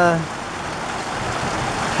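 Heavy rain pouring down, a steady hiss that swells slightly toward the end.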